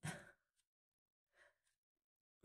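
Near silence, with a faint breath about one and a half seconds in.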